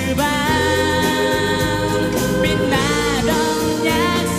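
A 1990s Korean pop song sung live: a male lead voice with female backing voices over instrumental accompaniment, with a held note that bends in pitch about three seconds in.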